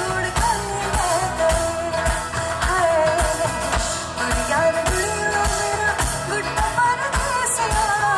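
A woman singing a pop song into a microphone with a live band, the kick drum keeping a steady beat about twice a second.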